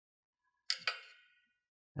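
Two quick light clinks of a paintbrush against ceramic, a fraction of a second apart, each ringing briefly.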